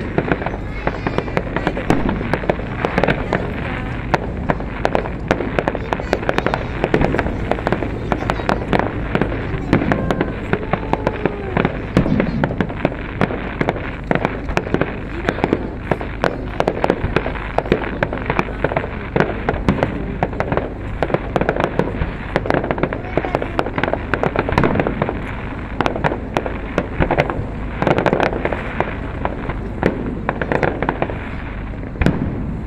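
Aerial fireworks shells bursting in a continuous barrage: many sharp bangs in quick succession, often overlapping.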